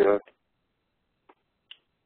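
A man's voice trailing off on a short "uh", then silence broken by two faint, quick clicks in the second half.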